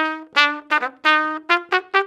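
Trumpet playing a quick phrase of short, separately tongued notes in a march style. The notes start low and climb step by step in pitch in the second half.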